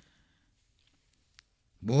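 A pause in a monk's preaching: near silence broken by a couple of faint, sharp clicks past the middle, then his voice resumes just before the end.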